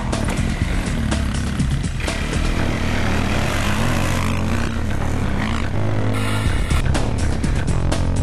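Quad ATV engine running and revving under background music with a steady beat.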